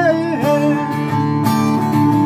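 An acoustic guitar being strummed steadily, with a man's singing voice holding a note for about the first half second.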